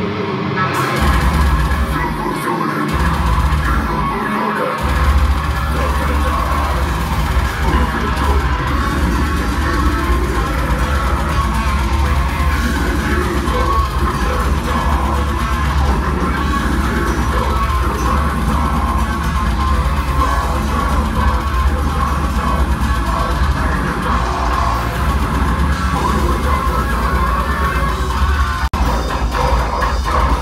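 Technical deathcore band playing live at full volume, heard from within the crowd: heavy distorted guitars, pounding drums and bass, with screamed vocals. The full band comes in about a second in, with two short stops in the low end in the first few seconds.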